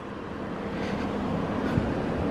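Steady low vehicle hum with background noise, growing slightly louder toward the end.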